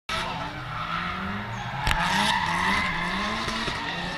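Group B rally car engines revving up and down on the track, with tyre squeal and a single sharp bang about two seconds in.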